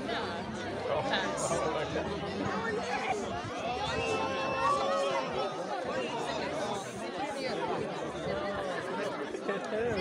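A close crowd of children and adults talking over one another, many overlapping voices at once.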